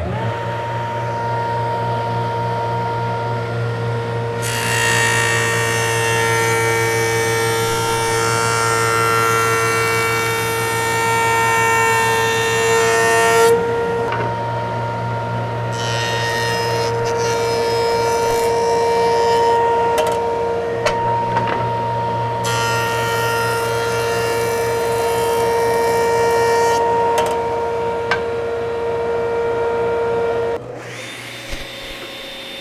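Grizzly jointer starting up and running with a steady hum, its cutterhead planing a hard maple board in three passes. The first, longest pass is the face of the board and the later two are its edge against the fence, each a rough cutting noise over the motor.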